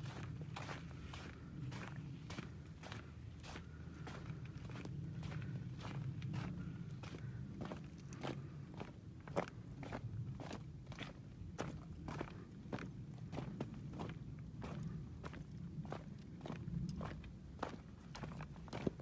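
Footsteps crunching over loose, flat shale stones, about two steps a second, with the stones clattering against each other underfoot.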